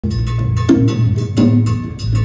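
Live Latin band groove led by hand-played conga drums, with sharp percussion strikes over a drum kit and a steady electric bass line.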